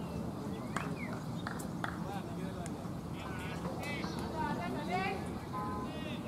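Open-air field ambience of players' voices calling out at a distance, with scattered short, high-pitched calls over a steady low murmur.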